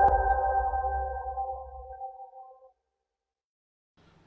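The ringing chord of a channel's logo music sting fading away, a low rumble under several steady tones, dying out about two and a half seconds in.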